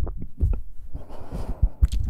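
Close-miked ASMR trigger sounds: irregular soft low thumps, heartbeat-like, with scattered sharp clicks and a short soft hiss about a second in.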